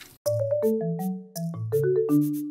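Short musical jingle: a quick run of struck notes stepping through a melody over bass notes, starting a moment in after a brief gap. It is the sting that opens a new chapter on its title card.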